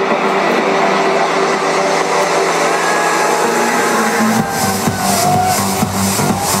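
Loud electronic dance music over a large venue PA: a build-up with the bass and kick drum dropped out, then the full beat with bass comes back in about four seconds in.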